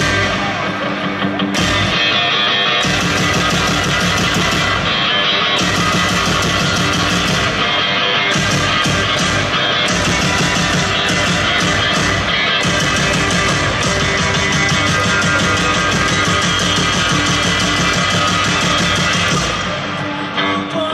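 Rock band playing live through a stadium PA: distorted electric guitar, bass guitar and drums in an instrumental passage without vocals, heard from the crowd.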